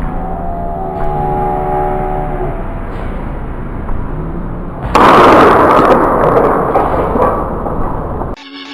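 A starting pistol fires about five seconds in to start a sprint race, a sudden loud crack followed by a few seconds of loud noise that gradually fades.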